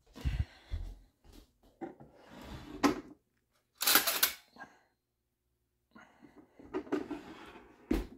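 Scattered handling sounds of someone moving about a kitchen: rustles and knocks, a sharp click, and a short loud clatter about four seconds in, likely a drawer being opened while fetching a knife to open a box.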